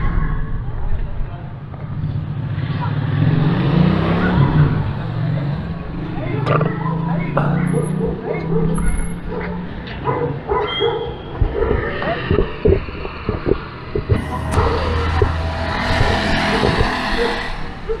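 Street ambience: voices of people talking nearby and a motor vehicle running, with a low steady hum through the first half and a rushing hiss for about three seconds near the end.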